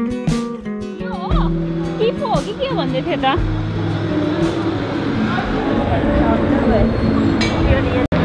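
Acoustic guitar background music that stops about a second in, giving way to busy street noise: a steady hum and crowd bustle with voices of passers-by rising and falling over it.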